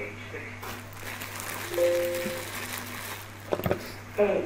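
Quiet music from the opening of an English listening-exercise recording played back on a computer, with a short held tone about halfway through and a few sharp clicks near the end.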